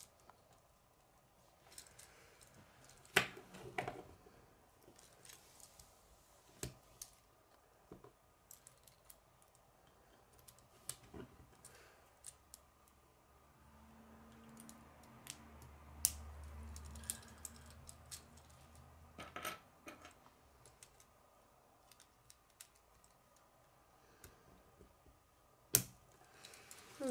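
Plastic K'nex rods and connectors clicking and snapping together as they are fitted by hand: scattered faint clicks, the loudest about three seconds in, around nineteen seconds and just before the end.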